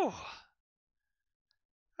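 A man's breathy "whew": an exhaled sigh falling in pitch, fading out about half a second in.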